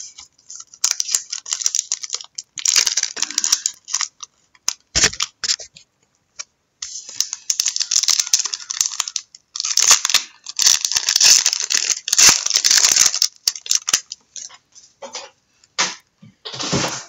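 Plastic foil wrappers of trading-card packs crinkling and tearing as they are pried open, in stretches of crackling with a pause in the middle and a single knock about five seconds in.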